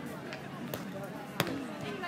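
A hand strikes a volleyball with one sharp smack about one and a half seconds in, a serve sending the ball over the net, against a steady background of people's voices.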